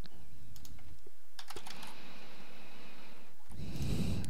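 Computer keyboard being typed on: about half a dozen separate key clicks in the first second and a half, as a short word is entered.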